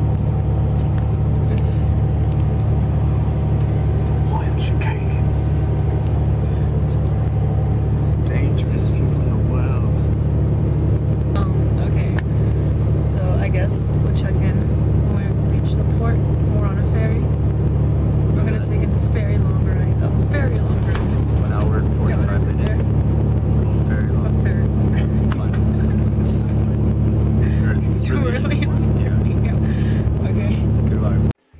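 Steady low drone of a coach bus's engine and road noise heard from inside the passenger cabin, unchanging throughout, with voices talking quietly over it.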